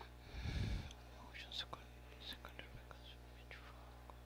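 Faint whispering picked up by an open microphone, with a short low thump about half a second in, over a steady low electrical hum.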